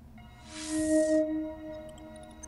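Sound effect from Sony's LinkBuds AR unboxing app: a chord of steady ringing tones starts, then a whooshing swell peaks about a second in and fades. A faint high twinkle comes near the end.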